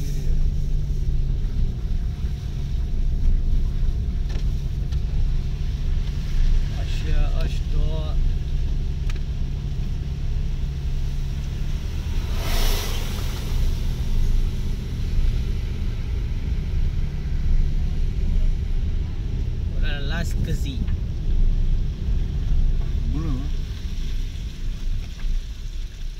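Car driving up an unpaved mountain road, heard from inside the cabin: a steady low engine hum under the rumble of tyres on the dirt surface. About halfway through there is a short rush of noise.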